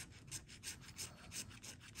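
Scratch-off lottery ticket (50X Cash) being scraped with a thin white tool in quick back-and-forth strokes, several a second, rubbing the latex coating off the numbers.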